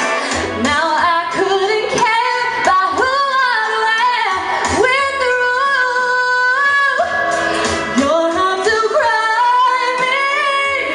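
A woman singing a pop song live into a microphone, holding one long note about halfway through.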